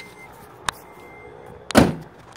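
Car door being opened as someone gets out: a sharp latch click a little way in, then a louder thump near the end.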